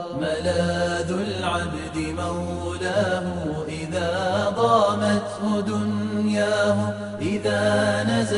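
A solo voice chanting Arabic verse in long, ornamented phrases with sweeping pitch over a steady low drone. It starts suddenly.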